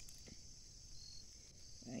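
Faint, steady, high-pitched chorus of crickets, with a brief higher note about a second in. A man's voice starts right at the end.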